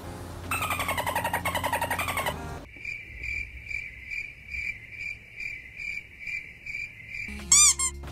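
A short pulsing musical sting, then a crickets-chirping sound effect: a steady high chirp repeating about two and a half times a second for several seconds. A brief, loud warbling call with repeated rises and falls in pitch cuts in near the end.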